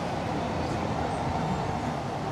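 Steady outdoor city background noise: a low, even rumble with no single event standing out.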